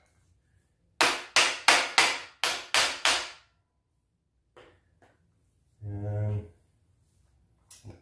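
Small hammer tapping on the steel frame of a floor jack, seven quick strikes over about two seconds, each ringing briefly, knocking the reassembled parts into line so the bolts will go in. A short grunt or word from a man follows a few seconds later.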